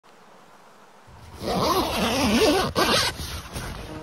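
A tent's zipper pulled in one long rasping zip lasting about a second and a half.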